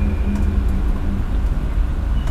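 Steady low rumble with no speech over it, and a faint thin high tone dying away about half a second in.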